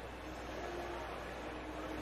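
Faint, steady stadium crowd noise from the game broadcast, with a faint held tone in it.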